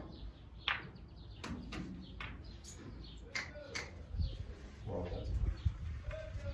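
Snooker balls clicking against each other and knocking off the cushions after a shot: one sharp click under a second in, then several softer knocks over the next three seconds. Low thumps follow near the end.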